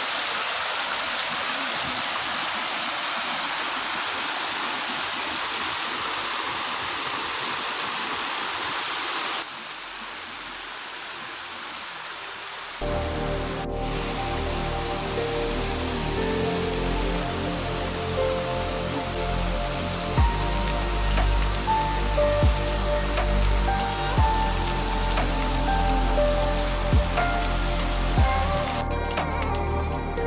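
Shallow stream water rushing over a rock slab, a steady hiss for about nine seconds that then drops quieter. About thirteen seconds in, background music with a steady bass comes in and carries on to the end.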